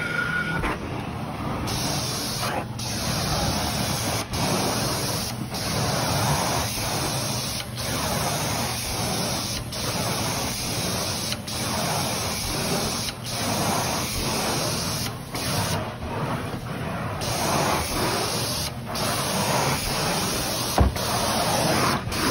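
Carpet-cleaning extraction wand running: a steady rushing hiss of spray and suction, broken by short dips every second or two.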